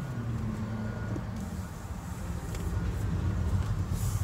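Engine and road noise heard inside the cabin of a 2018 Honda Accord while it is being driven: a steady low hum.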